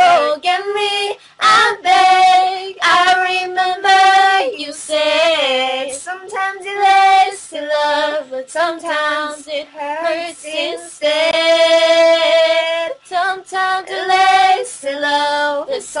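A young female singer singing a cover, with a wavering vocal run about five seconds in and a long held note in the last third.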